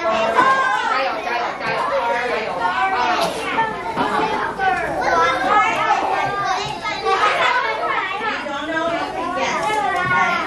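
Many children talking and calling out at once in a classroom, their voices overlapping into a continuous hubbub.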